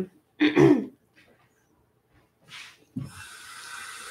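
A woman clears her throat once, about half a second in. About three seconds in, a light knock is followed by a steady hiss that starts and keeps going.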